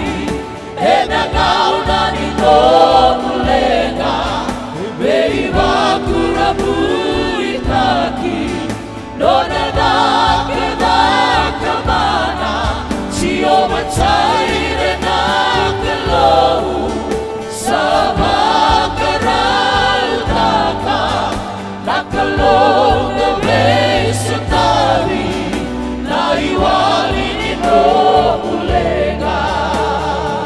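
A worship team singing a Fijian-language gospel song in harmony, women's voices leading through microphones, over a steady instrumental backing.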